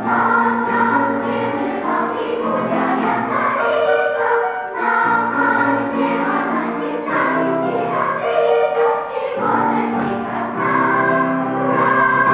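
Mixed children's choir, ages six to fifteen, singing a song together with sustained, held notes.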